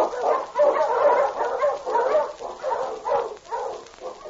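Sled dogs barking, many short barks overlapping one another, thinning out near the end.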